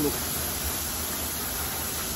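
Pistol-grip hose nozzle spraying a fine mist of water into wire pigeon cages, bathing the birds: a steady hiss.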